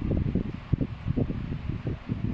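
Low, uneven rumble of moving air buffeting the microphone, fluttering with short soft thumps.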